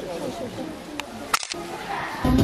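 Low murmur of audience voices in a hall, with a thin sharp click about a second in and a louder sharp crack about a second and a half in, followed by a brief dropout.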